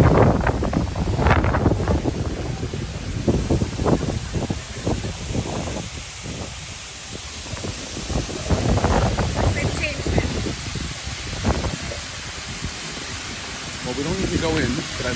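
Indistinct voices of people talking nearby, loudest at the start and again a little past the middle, over a steady hiss of wind on the microphone.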